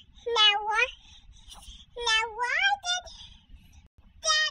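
Two high-pitched, drawn-out wordless vocal calls that glide in pitch: a short one near the start and a longer, rising one about two seconds in.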